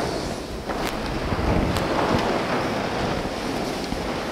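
Congregation sitting down in the pews after the Gospel: a steady rustle and shuffle of many people, with a couple of sharp knocks about one and two seconds in.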